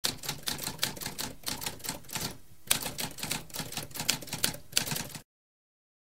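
Typewriter typing: a fast, uneven run of key strikes with a short break a little past two seconds in, stopping abruptly about five seconds in.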